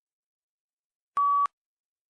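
A single short electronic beep, one steady tone lasting about a third of a second, a little over a second in: the test software's cue that recording of the spoken answer has begun.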